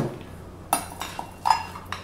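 A metal measuring cup scooping soaked almonds out of a bowl, with several sharp clinks and knocks of the cup against the bowl and the nuts.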